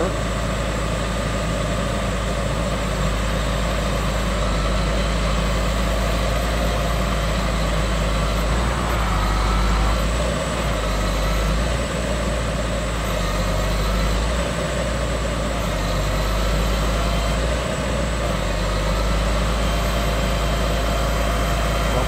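Steady drone of a truck-mounted hydraulic knuckle boom crane, an Atlas 560.1, running under load as it lifts a partly loaded 20-foot shipping container.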